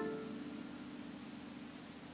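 A chord on a Yamaha piano dying away after it was played, leaving one note ringing on faintly as it fades.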